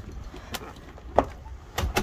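Three sharp knocks about two-thirds of a second apart, the middle one loudest: steps out of a house door onto a wooden deck, with the door and footsteps on the boards.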